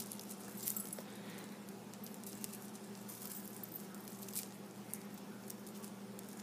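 Faint, scattered clicks and light rattling of the beads on a chunky beaded charm knocking against each other as it is turned in the hands, over a low steady hum.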